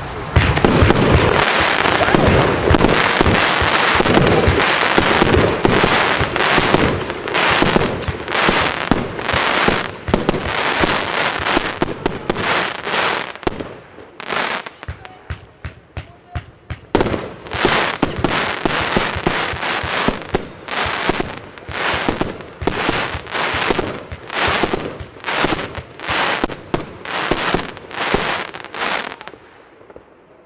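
Evolution Fireworks Noi-Z compound firework cake firing: a dense, rapid barrage of loud shots and bursts for about the first half, then single shots roughly two a second, stopping shortly before the end.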